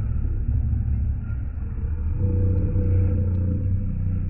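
Doberman Pinscher growling steadily and deeply while gripping a trainer's bite sleeve during bite work, the growl growing stronger about halfway through.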